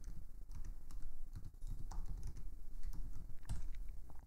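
Typing on a computer keyboard: a run of light key clicks as a short terminal command is typed and entered.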